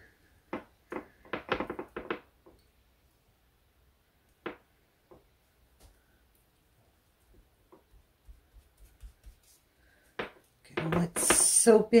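Wet wool lock scrubbed against a bar of soap in a small dish: a quick run of short rubbing strokes in the first couple of seconds, then scattered faint wet handling sounds.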